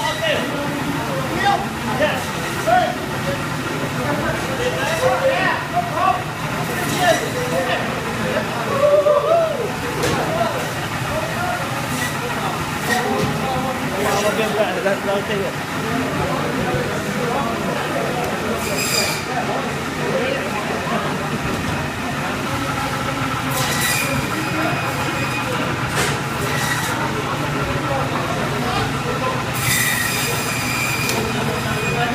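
Busy meat-cutting room: indistinct voices of several workers over a steady machinery hum, with a few sharp knocks and clatters in the second half.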